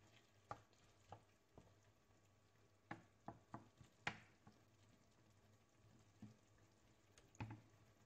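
Wooden spoon stirring a chicken-and-tomato filling in a nonstick frying pan, heard faintly as irregular light knocks and scrapes of the spoon against the pan, most of them a few seconds in.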